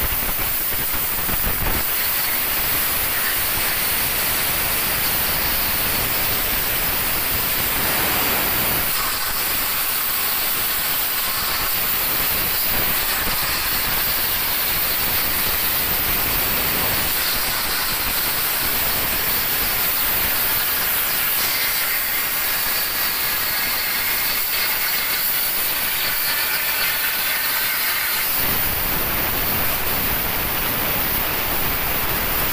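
CNC cutting torch cutting through thick steel plate: a loud, steady hiss.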